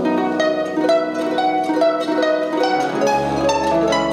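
Live band playing a slow, gentle instrumental passage led by a pedal harp's plucked notes, with other strings underneath. A low double-bass note comes in about three seconds in.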